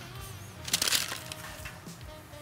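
A short crunchy scrape, a little under a second in, as a metal tart ring is lifted off a baked shortcrust tart shell, over faint background music.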